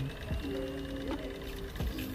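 Belt-driven power sprayer running: a steady motor and pump hum with a faint repeating low pulse.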